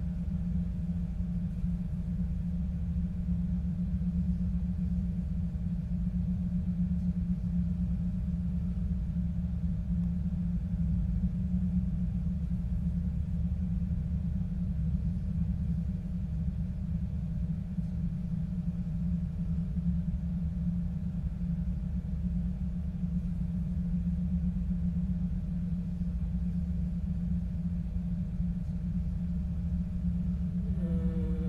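Low, steady sound-design drone from a horror film score, a deep rumbling hum held unchanged with a faint ringing tone above it.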